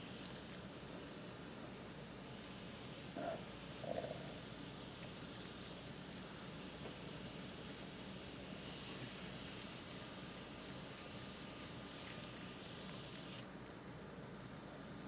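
Faint, steady room background noise with a low hum. Two brief, slightly louder sounds come about three and four seconds in.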